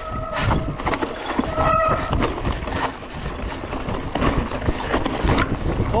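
Berria Mako full-suspension mountain bike descending fast over rocks, with a constant clatter of knocks and rattles from tyres, chain and frame and a low rush of wind on the microphone. Two brief high squeals come in the first two seconds.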